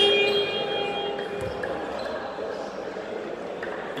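Basketball scoreboard horn sounding a steady electronic tone, which fades out about a second in. It is followed by the noise of the sports hall and a single low thud of a ball on the court.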